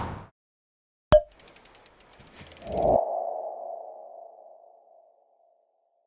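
Logo sting sound effects: a sharp click about a second in, a quick run of ticks, then a swelling whoosh into a low hit, followed by a ringing tone that fades away over about two seconds.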